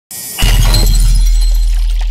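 Logo-intro sound effect: a short hiss, then about half a second in a heavy low boom hits with glass-like shattering on top. The boom holds and slowly fades.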